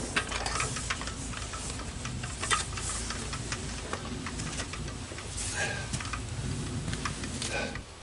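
Handling noise as the camera is picked up and moved: scattered clicks, knocks and rustling over a low wind rumble, with one louder knock about two and a half seconds in.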